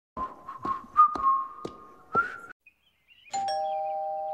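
Cartoon footsteps going up a few front steps, about six treads, with a thin high wavering tone over them. After a short pause, a two-note ding-dong doorbell chime, the higher note first and then a lower one, ringing on.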